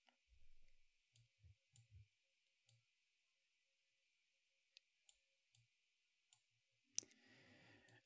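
Near silence broken by a few faint computer-mouse clicks, with one sharper click about seven seconds in.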